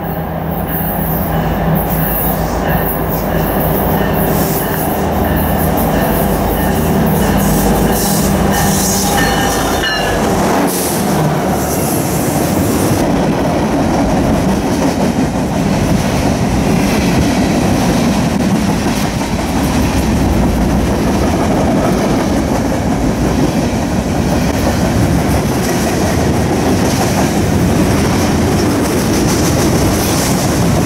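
Diesel freight locomotives approach and pass close by with their engines running, the engine tone dropping in pitch as they go by about ten seconds in. Then a long string of freight cars rolls past with a steady rumble and clatter of wheels on the rails.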